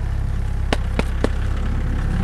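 An engine idling with a steady low rumble, and three short clicks about a second in.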